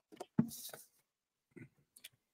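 A short thump and then a brief breathy hiss about half a second in: an unpowered draw on an Innokin Zenith II vape tank with its airflow closed down, priming the new coil.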